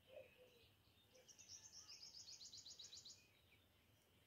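Faint bird trill: a rapid run of high notes, about eight a second, lasting about two seconds, over near silence.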